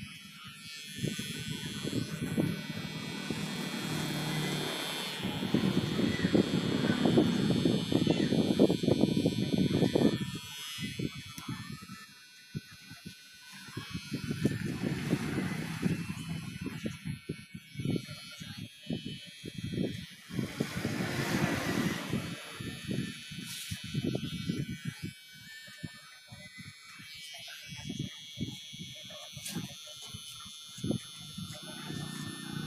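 Electric hair clippers buzzing as they cut hair over a comb, with voices talking on and off.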